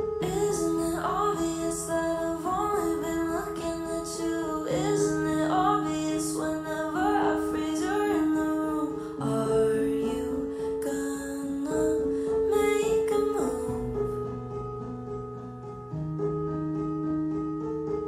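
Slow pop song intro in an EQ-processed version: sustained chords over a bass note that changes every four or five seconds, with guitar and keyboard and a female voice.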